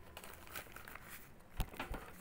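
Newspaper pages rustling faintly as they are handled and turned, with two soft low thumps near the end.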